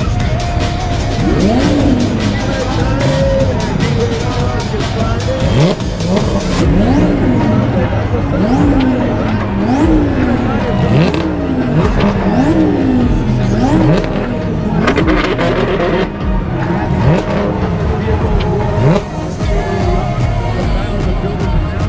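Dodge Challenger's engine revved again and again, the pitch climbing and dropping about once a second, over crowd noise and background music.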